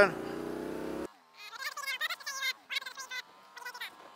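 Motorcycle engine and wind noise, cut off abruptly about a second in. Then indistinct speech over a faint engine tone that rises slowly as the bike speeds up.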